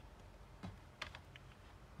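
A few faint clicks of a DVD disc and its plastic case being handled, the clearest about halfway through, over quiet room tone.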